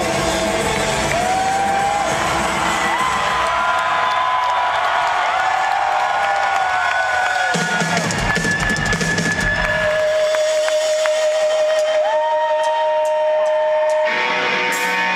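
Live rock concert heard from within the crowd: long held tones that slide up into pitch and sustain for several seconds each, over crowd noise. The low, drum-heavy backing drops out about halfway through, leaving mainly the held tones.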